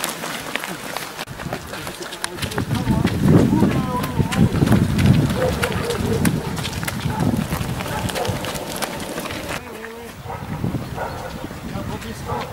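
Running footsteps of runners and their dogs on a gravel track, a patter of short sharp steps over a low outdoor rumble, with indistinct voices. The sound changes abruptly about a second in and again near the end.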